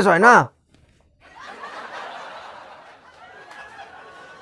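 A loud "Hello?" at the very start, then, after a second's pause, about three seconds of quiet, breathy snickering that slowly fades.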